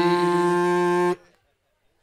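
A man chanting an Arabic verse into a microphone, holding one long, steady note that cuts off suddenly about a second in.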